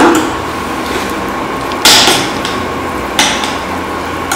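A spoon knocking and scraping against a metal pot while sticky filling mixture is scooped out. There are three clanks: one right at the start, the loudest, then one about two seconds in and one about three seconds in.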